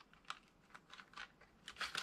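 Faint, light ticks and rustles of thin steel tension wrenches being handled and drawn from a leather pick case, several small clicks scattered through.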